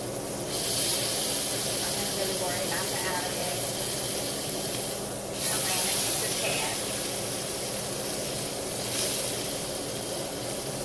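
Chuck roast sizzling loudly in hot lard in a cast-iron skillet as it is turned onto a fresh side to sear. The sizzle flares up about half a second in and again a little after five seconds in, then eases off near the end.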